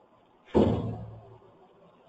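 A single loud thump about half a second in, with a low ring that dies away within about a second, like a door shutting.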